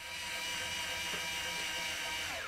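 A steel E string on a 1958 Gibson ES-125 archtop guitar ringing at a steady pitch with its overtones as it is being seated in a newly fitted Tusq nut.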